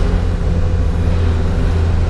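Steady low drone of a vehicle's engine and tyres on the road, heard from inside the moving vehicle.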